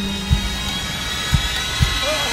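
Trailer sound design: low thuds in pairs, the pairs repeating about every second and a half, over a steady hissing drone.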